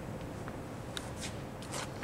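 Quiet room tone with a few faint, brief clicks and rustles in the second half.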